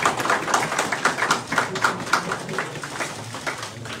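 Applause from a small group of people, many separate hand claps overlapping, thinning slightly toward the end.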